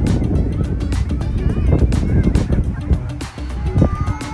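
A flock of gulls calling overhead, many short rising and falling cries starting about a second in and growing busier, over the low rumble of wind on the microphone.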